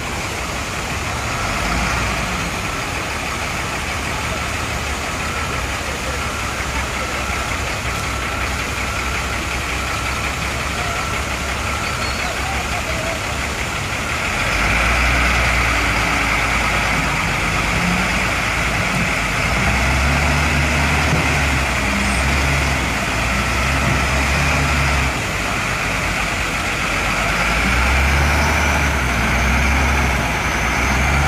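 Heavy diesel engine of a wheel loader running under load as it tows a bus by cable. It gets louder about halfway through, and its engine speed shifts up and down in steps over the second half.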